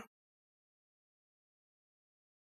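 Near silence: the sound track is cut to digital silence between the narrator's sentences.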